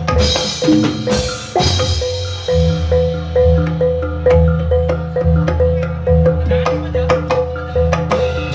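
Javanese gamelan accompaniment for a jathilan dance: metal-keyed percussion repeats one note about twice a second over low drum beats. There is a crash about a second in.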